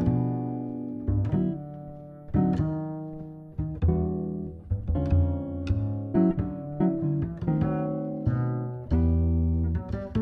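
Instrumental jazz trio music: plucked chords and single notes, each struck and left to ring out and fade, over a low bass line.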